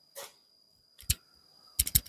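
Fingers touching and handling a clip-on T&W wireless lavalier microphone, heard through that same mic as sharp clicks. One short click comes about a second in, then a quick run of clicks near the end.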